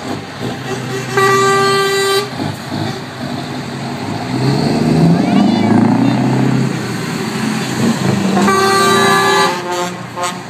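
A truck horn sounds one steady note for about a second. Then a heavy truck's diesel engine runs loud as the truck drives past. Near the end horns sound again for about a second and a half.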